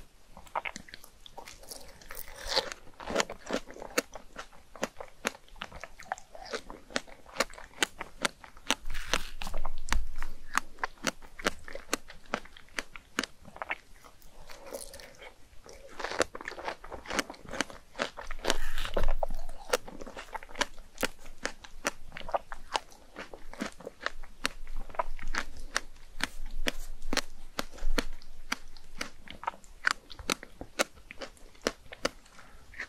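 Close-miked chewing and biting of fresh strawberries and chocolate whipped cream: a steady run of crisp, crunchy clicks and mouth sounds, with louder bouts of chewing a few times.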